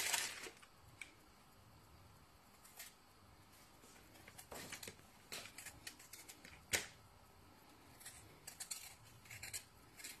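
Faint kitchen handling sounds: a brief rustle right at the start, then irregular light clicks, taps and scrapes of utensils and items being moved about on the counter, the sharpest click about seven seconds in.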